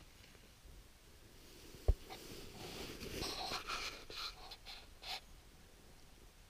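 A single sharp thump about two seconds in, then about three seconds of irregular, faint rustling and scraping that stops a little after five seconds.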